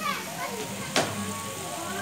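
Background voices, children's among them, chattering and calling out, with a single sharp click or knock about a second in that is the loudest sound, over a steady low hum.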